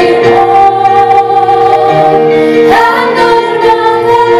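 Women singing a worship song with long held notes, accompanied by an electronic keyboard, with a rising vocal glide about three seconds in.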